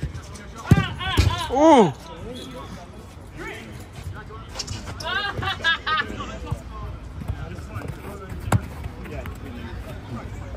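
Footballers shouting calls to each other across the pitch in two bursts, around the first two seconds and again past the middle, with thuds of the football being struck, one sharp thud near the end.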